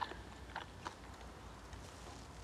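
Quiet eating sounds: chewing, with three faint clicks in the first second.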